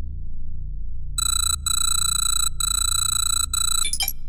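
A high, pitched electronic tone sounds in four broken stretches over a steady low hum, starting about a second in and ending with a brief sweep.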